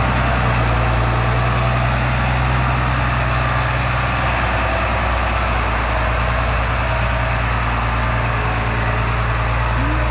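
A New Holland tractor's diesel engine runs steadily with a low drone while its front loader lifts a grapple-load of manure pack.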